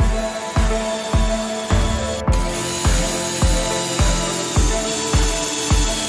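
Background music with a steady beat of about two thumps a second. From about two and a half seconds in, a drill runs under the music, boring a pocket hole in a pine board through a pocket-hole jig.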